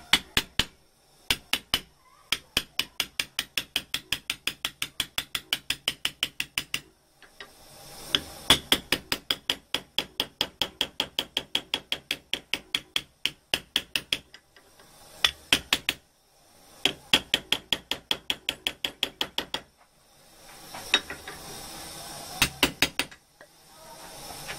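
Small hammer tapping a sewing-machine tape binder's thin folded sheet metal against a steel vise, shaping it. The light metallic strikes come about five a second in runs of several seconds, with short pauses, then slow to scattered blows near the end.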